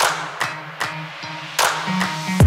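Background music: sharp percussive hits about every 0.4 s over held pitched tones.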